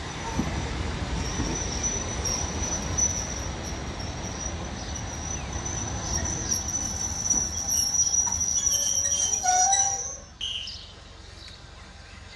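Railway passenger coaches rolling slowly past with a low rumble and a steady high-pitched wheel squeal. Both cut off suddenly about ten seconds in.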